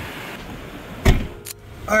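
Steady hum of a 2006 BMW 330i's inline-six idling with the AC blower running, heard from inside the cabin, then a single heavy thump about a second in and a sharp click just after.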